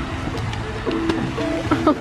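Background music with held notes, and a man's exclamation of "Oh" near the end.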